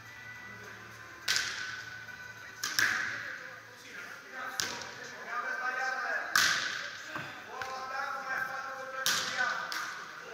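A volleyball struck by hands and forearms during serve and pass practice: about six sharp slaps a second or two apart, each ringing on in a large hall. Players' voices call between the hits.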